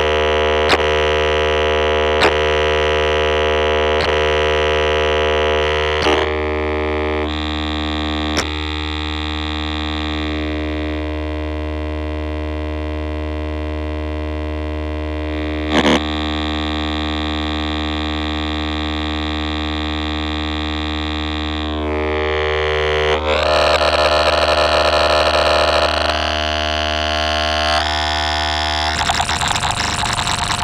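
Ciat-Lonbarde Peterlin (a Benjolin-type synthesizer) droning on one oscillator through its filter: a sustained, buzzy tone over a steady low note, with sharp clicks every second or two over the first several seconds. The timbre shifts as the filter is moved, darkening about 7 to 10 seconds in and turning brighter and buzzier about 23 seconds in.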